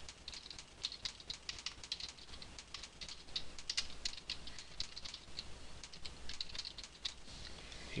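Typing on a computer keyboard: a quick, uneven run of keystroke clicks.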